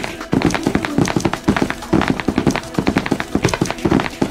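Rapid, irregular tapping and clattering, several sharp taps a second.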